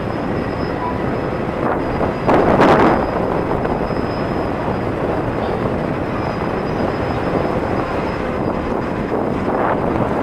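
Distant jet airliner, a Boeing 737's turbofan engines, running as it rolls along the runway: a steady noisy rumble. A brief louder rush comes about two and a half seconds in.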